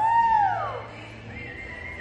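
A spectator's loud "whoo" cheer, its pitch sweeping up and falling back in under a second, followed about a second later by a shorter, higher cry, over faint background music.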